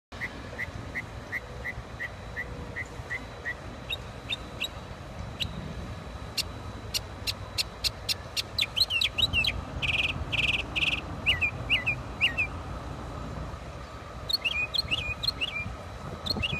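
A songbird singing a string of varied phrases, each repeated several times. It opens with a run of even chirps, about three a second, moves to sharp high notes, gives three buzzy rattles about ten seconds in, and ends on looping whistled notes. A low steady rumble lies underneath.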